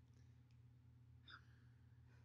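Near silence: room tone with a steady low hum, and one faint short sound a little past halfway.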